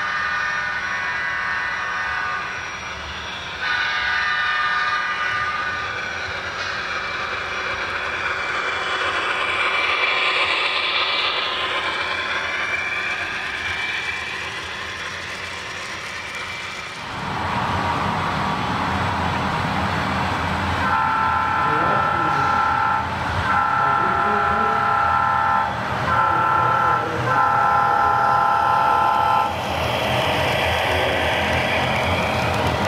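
Model diesel locomotive sound system blowing a multi-chime air horn: short chords early on, then the long-long-short-long grade-crossing pattern in the second half. A low rolling rumble of the passing train sets in suddenly about halfway and runs under the last blasts.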